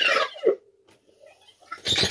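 Sony reel-to-reel tape deck rewinding: a high-pitched squealing warble of tape running back fast, which falls in pitch and stops about half a second in. Then a faint steady hum, and a few sharp clicks near the end.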